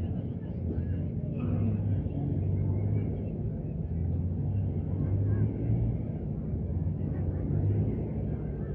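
Small truck engines running at low speed as decorated mini trucks roll past, a steady low hum, with indistinct voices in the background.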